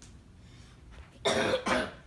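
A person coughing twice in quick succession, two short, loud coughs in the second half.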